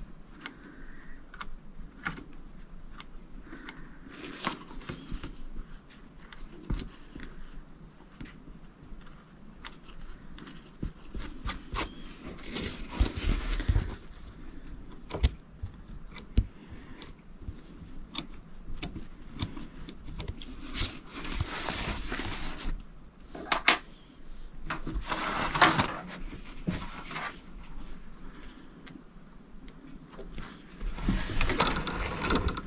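Small curved embroidery scissors snipping loose threads on a hooped quilt block, with fabric and stabilizer being handled: scattered, irregular sharp clicks and several longer spells of rustling, the loudest around the middle and again near the end.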